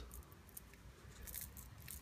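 Near silence: a pause in speech, with faint small rustles and clicks from a quadcopter frame being turned in the hands.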